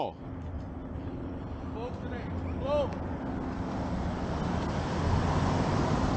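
Road traffic: a car driving past on the street, its engine and tyre noise swelling steadily louder over the second half as it approaches.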